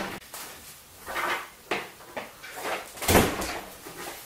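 Door and handling noises: several short scuffs and rustles, then a loud knock of a door about three seconds in.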